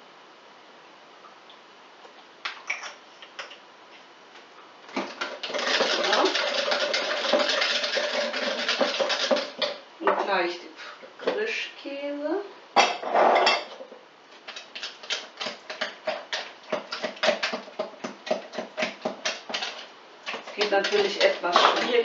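A hand whisk stirring cheesecake filling in a glass jug, with a stretch of dense scraping and then quick, regular clinking strokes against the glass.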